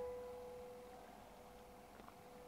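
The last piano chord of a closing music piece ringing out, a single held tone dying away steadily until it is barely audible by about a second in.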